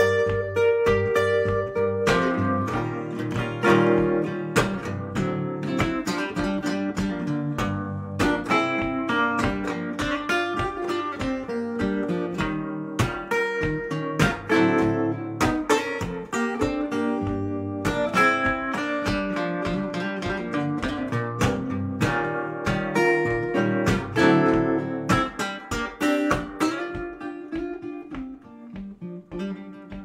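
Archtop guitar played solo in standard tuning: a minor-key blues passage of picked notes and strummed chords, getting quieter near the end.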